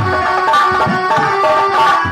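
Instrumental stage music: an electronic keyboard plays a quick, banjo-like melody over a few deep hand-drum strokes from a barrel drum.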